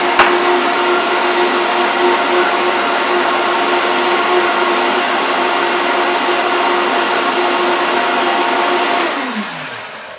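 Vitamix blender motor running at a steady high speed, whirring through a thick cream of soaked cashews, lemon juice and agave, with a sharp click just after the start. About nine seconds in it is switched off and the whine falls in pitch as the motor spins down.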